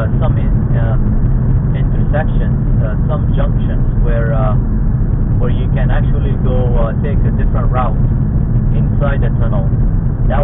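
Steady low rumble of a car's engine and tyres heard from inside the cabin while driving through a road tunnel. A voice talks at intervals over it.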